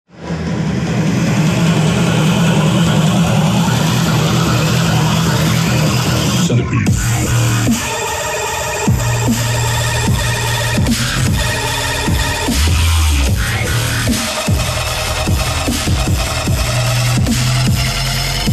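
Dubstep-style electronic dance music from a DJ set played through PA speakers: a dense build-up, a brief break about seven seconds in, then a steady beat with heavy bass.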